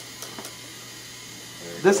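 Small battery-powered motor driving a marble-coaster lift belt, running with a steady low hum and a few faint clicks; a voice starts near the end.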